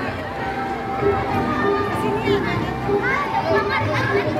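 Several voices talking at once, children among them, with no single clear speaker standing out.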